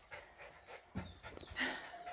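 Mountain Blue Doodle puppies panting, with a few short, thin, falling whimpers around half a second in. A soft knock comes about a second in, and a brief rustle follows.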